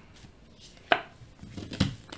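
Tarot cards being laid or tapped down on a table: two sharp taps, one about a second in and one near the end, with faint handling sounds between.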